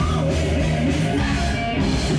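A heavy metal power trio playing live: distorted electric guitar, electric bass and a drum kit with cymbal hits, in an instrumental passage with no singing.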